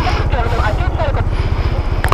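Benelli motorcycle engine running with a steady, even train of low exhaust pulses.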